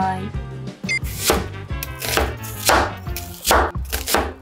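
Kitchen knife chopping peeled onions on a plastic cutting board: a handful of uneven knife strokes, starting about a second in.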